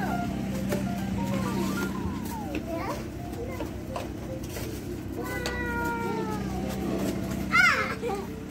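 Children's voices making wordless calls, with a short, high squeal near the end that is the loudest sound.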